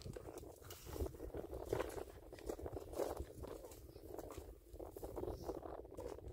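Irregular rustling and crackling of dry, stringy tree bark being pulled and torn by hand, with crunching steps on stony ground.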